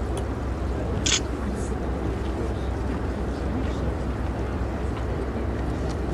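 Waterside outdoor ambience: a steady low rumble throughout, with a single sharp clack about a second in.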